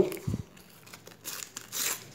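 A Panini football sticker packet being torn open and its wrapper crinkled by hand, with a short louder rip near the end.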